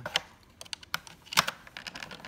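Metal clicks from the hand-worked side plunger and coin mechanism of a 1933 Bally Bosco dice trade stimulator: a sharp click just after the start, a few lighter clicks, and a louder click about one and a half seconds in, as the plunger pushes the last coin out and lets the next one in.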